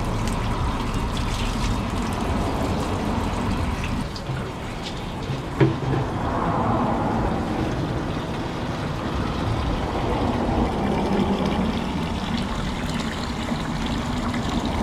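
Steady stream of artesian well water pouring from a spout into an orange plastic 5-gallon cooler, filling it, with one brief knock a little before the middle.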